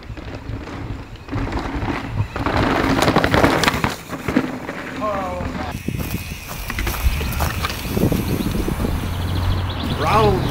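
Santa Cruz mountain bike ridden hard over a dirt trail: tyres crunching and skidding on loose soil and roots, with sharp knocks and rattles from the bike. The loudest stretch comes about two to four seconds in.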